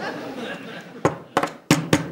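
Four sharp clicks in quick succession, starting about a second in, after a stretch of low background murmur.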